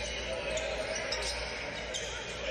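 Basketball game audio in a packed gym: steady crowd chatter, with a ball dribbling on the court floor.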